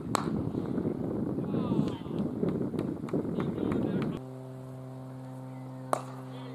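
A cricket ball is struck by a bat, a sharp crack just after the start, over a rough, uneven rumble. About four seconds in, the background switches abruptly to a steady hum. A second bat-on-ball crack comes at the very end.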